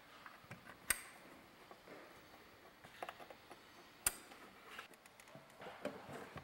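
Faint handling clicks and light knocks as a home-control touchscreen panel and its metal backplate are fitted to a wall box, with two sharper clicks about a second in and about four seconds in.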